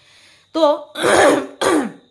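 A woman clears her throat: two rough bursts in quick succession about a second in, the second trailing off lower in pitch.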